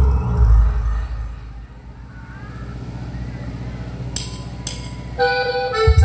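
A live band's sound system between songs: a loud low bass note dies away, leaving a steady low hum from the amplifiers. Two light cymbal taps come about four seconds in, and near the end a held accordion-like chord starts as the next song begins.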